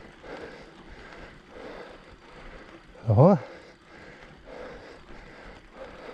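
A mountain bike rolling along a dirt and grass trail, heard as a steady low noise. About three seconds in, the rider makes one brief vocal sound whose pitch rises and falls, the loudest thing in the stretch.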